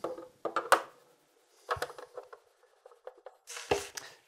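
Screwdriver undoing the screws on the underside of a computer case: scattered small clicks and scrapes, with short quiet gaps between.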